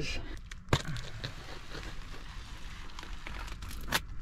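Cardboard shipping box being torn open along its tear strip: a sharp snap just under a second in, then steady tearing and crackling of cardboard.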